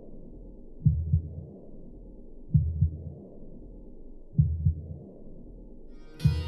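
Slow, muffled heartbeat: three lub-dub pairs of low thumps, about two seconds apart, over a low hum.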